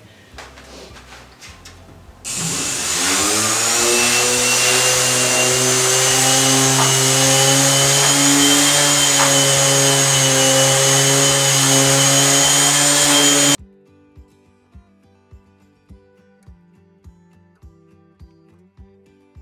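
Bosch orbital sander switched on, its whine rising as the motor spins up about two seconds in, then running steadily while scuff-sanding the finished wooden top with 220-grit paper to knock off the shine. The sound cuts off abruptly about 13 seconds in, and soft background music with a steady beat follows.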